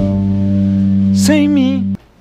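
A band holds a steady chord while a male singer comes in with a sung note with a strong vibrato about a second and a quarter in. The music cuts off abruptly just before the end.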